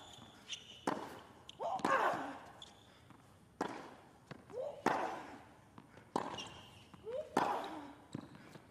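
Tennis ball struck back and forth with rackets in a baseline rally, a hit about every second and a half, with a player's short grunt on several of the shots.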